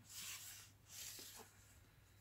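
Faint rustle of tarot cards being handled: a card slid off a stack and turned over on the table, two soft swishes.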